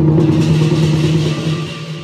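Lion dance percussion: a steady low drum-and-gong ring under a bright cymbal wash that swells just after the start and fades over about a second and a half.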